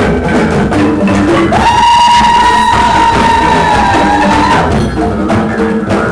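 Live ensemble of bamboo tube drums and wooden percussion playing a steady knocking rhythm. About a second and a half in, a single high held note enters above it, lasts about three seconds, and bends down slightly just before it stops.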